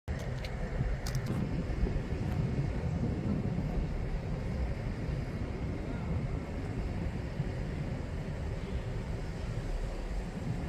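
Low, steady rumble of an LNER Azuma high-speed train at a station platform, with wind buffeting the microphone. A few light clicks come in the first second and a half.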